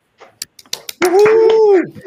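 A few sharp hand claps, then a person's drawn-out vocal 'ooh' of approval lasting under a second, rising slightly and falling away, heard over a video call.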